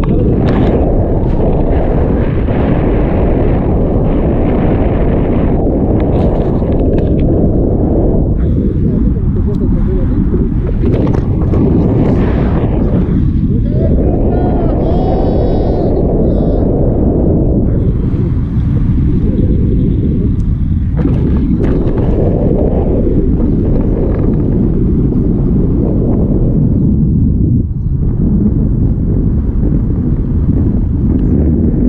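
Wind rushing over an action camera's microphone in tandem paraglider flight: loud, steady buffeting that keeps up throughout, with a brief high-pitched sound about halfway through.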